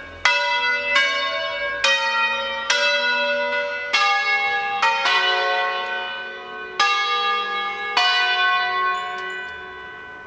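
Five-bell church peal tuned to F#3, cast by Carlo Ottolina e Figli of Seregno, the bells swung on wheels: about nine strokes in an uneven sequence, each ringing on and overlapping the next. The last stroke comes about eight seconds in and the ringing then dies away.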